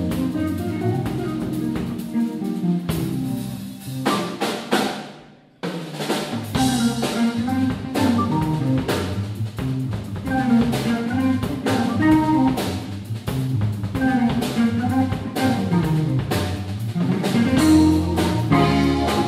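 Live jazz-fusion trio of archtop electric guitar, organ and drum kit playing an uptempo groove. About five seconds in the band stops and the sound dies away for a moment, then all three come back in together.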